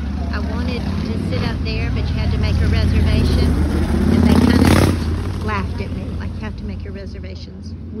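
A car driving past close by on the street, its engine and tyre noise growing louder for several seconds and falling off sharply about five seconds in, over a steady low traffic rumble.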